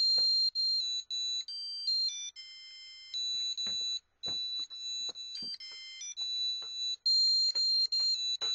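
Arduino playing a simple electronic tone melody: plain beep notes one at a time, changing pitch every quarter to half second, with short gaps between them.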